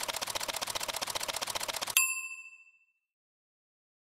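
Edited intro sound effect: a fast, even run of soft ticks, about ten a second, ending about two seconds in with a single bright bell-like ding that rings out and fades within about half a second.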